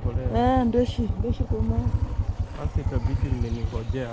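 Motorcycle engine running at low road speed, a steady, fast low pulsing from the exhaust.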